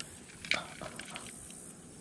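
Plastic fish lip-grip being clamped onto a bass's jaw and hung from a hand scale: one sharp click about half a second in, then a few faint ticks of handling.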